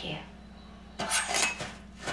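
Sword-stab sound effect playing from the episode: a short, sharp metallic scrape and clink of a blade about a second in, lasting under a second.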